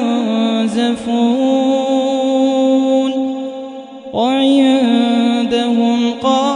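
A man's voice chanting Quran recitation in long, held melodic phrases. There is a brief pause for breath about four seconds in, then a new phrase starts on a rising note.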